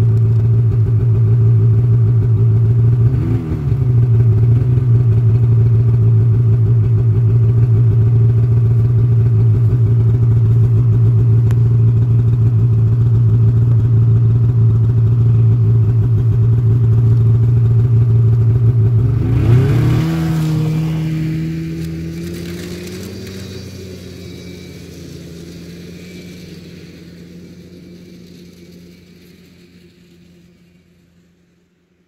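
Polaris snowmobile engine running loudly and steadily at idle just after starting, with a short blip a few seconds in. About two-thirds through it revs up and settles at a higher pitch, then fades gradually as the sled moves off.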